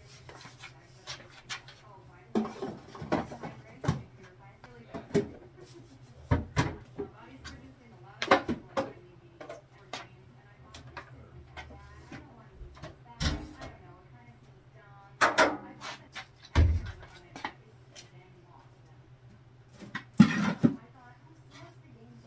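Irregular knocks and clatter of plastic bottles and cleaning items being picked up and set down on a bathroom vanity and wire shelf while cleaning, over a low steady hum.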